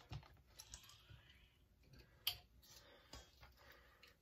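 Near silence with faint clicks and handling noises from a plastic marinade injector being worked over a steel bowl of raw turkey necks; one sharper click a little past halfway.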